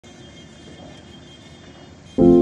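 Low, steady outdoor city background noise, a distant traffic hum with no distinct events.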